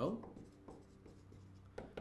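Dry-erase marker writing on a whiteboard: a run of faint short strokes and squeaks as a word is written letter by letter.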